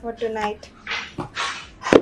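A woman speaking briefly in short breathy phrases, with a sharp loud burst just before the end.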